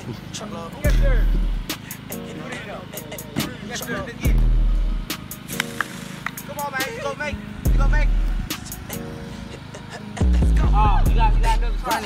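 Hip hop music: long deep bass notes about every three and a half seconds under quick hi-hat ticks, with a voice over the beat.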